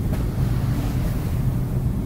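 Steady low-pitched rumble of the room's background noise, with no speech over it.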